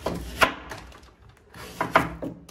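Large kitchen knife cutting through the tough husk of a palm fruit on a wooden board. There is one loud cut about half a second in, quieter scraping, then two quick cuts near the end.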